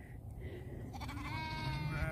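A sheep bleating: one long call starting about a second in, its pitch sinking slightly, over a low rumble of wind on the microphone.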